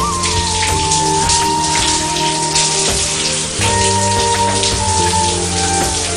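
Shower water spraying steadily, with background music over it: a slow melody of long held notes that steps down in pitch a few times.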